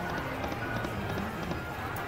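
Treasure Explosion video slot machine playing its reel-spin music and chimes while the reels turn, over the steady murmur of casino background noise.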